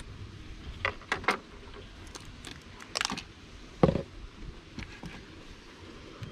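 Light clicks and knocks from handling the wooden boxes of a jataí stingless-bee hive as a honey super is lifted off and set aside. There are a few small taps about a second in, and a sharper knock about four seconds in.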